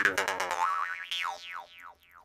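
Jaw harp plucked in a fast rhythm over its twanging drone. About halfway through the plucks slow to a few twangs whose overtones sweep downward in pitch, fading out toward the end.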